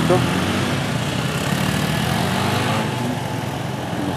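A motorcycle engine running as it passes close by, its sound slowly fading over the few seconds.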